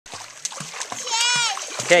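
Water splashing in a quick run of short slaps, about three a second, as a child swims near the shore. A child's high-pitched call cuts across the splashing about a second in.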